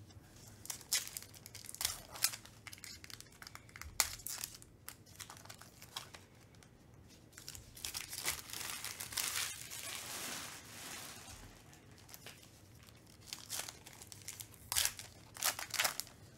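Foil wrapper of a trading-card pack crinkling and tearing as it is opened by hand. Sharp crackles come in the first few seconds, a longer stretch of rustling in the middle, and a few loud crackles near the end as the foil is pulled back from the cards.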